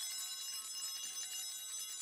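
An altar bell rung at the consecration of the chalice, ringing on as a steady high ring of several tones.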